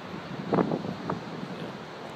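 Steady wind noise rushing on the microphone, interrupted by a short spoken "yeah" about half a second in.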